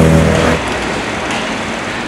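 A tuk-tuk's engine passing close by with a steady drone. It stops abruptly about half a second in, leaving an even wash of city traffic noise.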